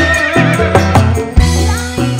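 Live dangdut band playing: steady bass and drum hits under a gliding, wavering lead melody.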